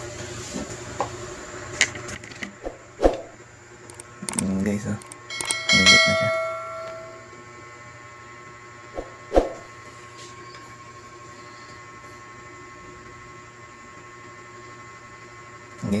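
Small portable clip fan running steadily with a low motor hum, spinning again after a repair for not turning. A bell-like ringing tone sounds about five seconds in and fades over a second or so, and a few short voice-like sounds come in the first half.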